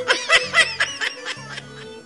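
Short, high-pitched bursts of laughter in the first second over background music with a low bass line.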